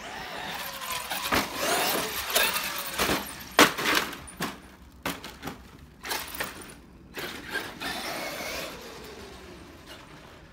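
Traxxas X-Maxx RC monster truck's brushless electric motor whining up and down as it drives over dirt jumps, with tyre noise and a series of sharp thumps and clatters from landings, the loudest about three and a half seconds in. Later there are fewer, lighter knocks, and near the end the motor whine falls away as the truck slows.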